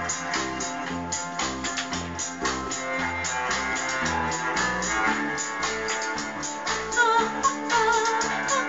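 Instrumental break of a rock song: guitars and bass over a drum kit keeping a steady beat.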